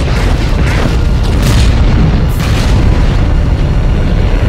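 Film sound effects of explosions: a continuous deep rumble broken by several sharp blasts, mixed with a music score.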